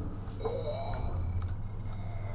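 A young girl's short wordless vocal sound, rising then falling, about half a second in, over a steady low hum inside a lift car.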